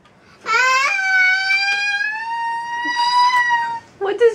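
A young child's voice holding one long, high 'aaah' for about three seconds, rising slightly in pitch before stopping. He is sounding out his own voice through a newly activated cochlear implant.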